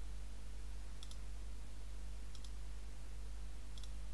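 Three faint computer mouse clicks, each a quick press and release, about a second and a half apart, over a steady low electrical hum.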